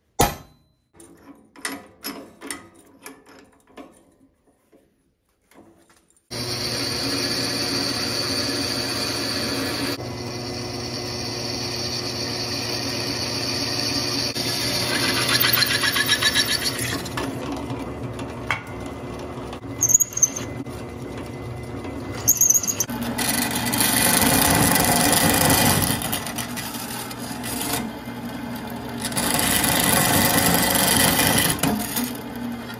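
A hammer strikes a center punch on heavy steel angle with one sharp blow, followed by a few light taps. From about six seconds in, a drill press runs steadily, drilling through the quarter-inch steel angle, with a couple of brief squeaks. It grows louder and rougher near the end.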